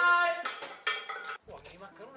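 A metal cooking pot and utensils clattering twice in quick succession, just after a man's drawn-out cry. Music starts near the end.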